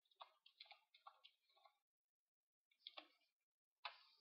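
Near silence, with faint computer keyboard and mouse clicks: a quick run of taps in the first two seconds as a date is entered, then two more short clicks near the end.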